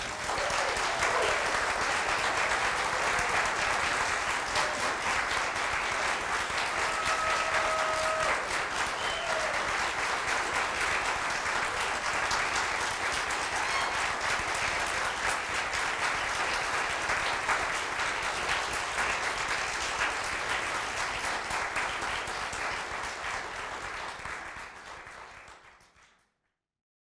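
Audience applauding: dense, steady clapping that tapers off and cuts out in the last couple of seconds.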